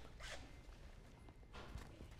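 Near silence broken by two faint, brief rustles: handling noise from wires and clothing being moved.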